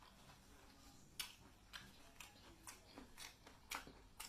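Faint, close-up eating sounds from a person chewing seafood: a string of short, sharp mouth clicks and smacks, about two a second, starting about a second in.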